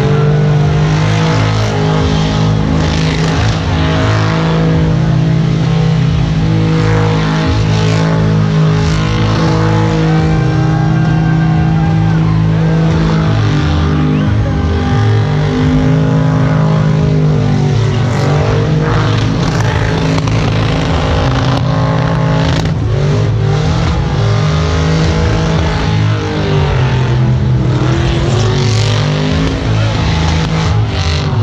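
Car engine held at high revs through a long burnout, tyres spinning and smoking against the pavement. The engine note stays loud and wavers, sagging and climbing back once near the end.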